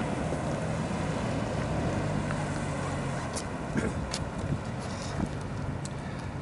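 Road traffic: a vehicle engine running with a steady low hum that fades out about halfway through, over a constant outdoor traffic hiss, with a few light clicks near the end.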